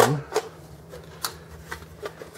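A few light, scattered clicks and knocks as the plastic CPU fan assembly of an HP dc5750m desktop is handled and fitted back into the metal case.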